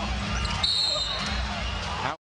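Basketball arena crowd noise and court sounds with a low steady rumble. A short, steady high-pitched tone sounds for about half a second near the middle.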